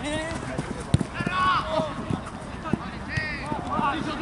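Football players shouting and calling to each other during play, with a few sharp thuds of the ball being kicked and running footsteps on artificial turf; the loudest thud comes about a second in.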